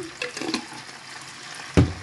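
Oil sizzling steadily as fish fillets deep-fry in a wok, with a few light clicks and one loud knock near the end as jars are handled on the table.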